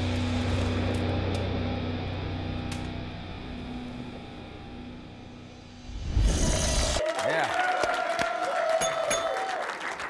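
Hard rock song with a held, ringing chord that fades away over the first six seconds, then a short loud burst. About seven seconds in it cuts to a studio audience applauding and cheering.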